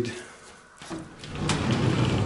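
A mirrored sliding wardrobe door being rolled open along its track: a click, then a steady rolling rumble that begins about halfway through.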